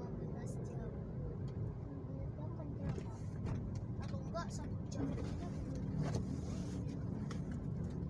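Steady low rumble of a car's engine and road noise heard inside the cabin while driving in traffic, with faint voices in the background.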